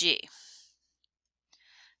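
The end of a spoken word, then near silence with a faint click or two in the middle and a short, faint breath just before speech resumes.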